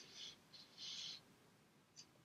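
Near silence: room tone with two faint, short hissing rustles in the first second.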